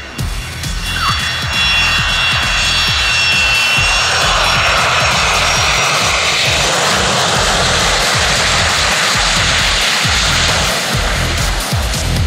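Yak-40 trijet's three turbofans running through its landing and rollout, a rushing jet noise with a high whine that builds about two seconds in and eases near the end. Electronic music with a steady beat plays underneath.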